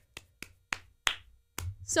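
About five short, sharp clicks or taps at uneven spacing over a second and a half, then a woman's voice begins near the end.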